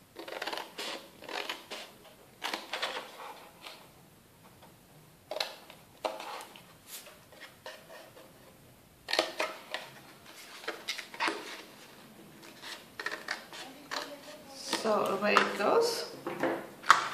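Small scissors snipping through cardstock in short, irregular cuts, with the paper rustling as it is handled and turned.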